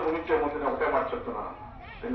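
A man speaking into a handheld microphone, pausing briefly near the end.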